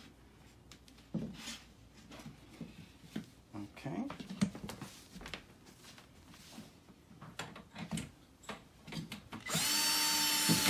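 Scattered small clicks and knocks of wooden parts being handled, then near the end a cordless drill fitted with a cut-down Allen key starts running steadily, driving a screw into the wooden shoe rack.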